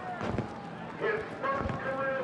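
Indistinct voices of a close group of people celebrating, with a couple of low thumps about half a second in and near the end.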